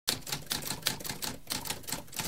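Typewriter keys being typed in a quick run, about five key strikes a second.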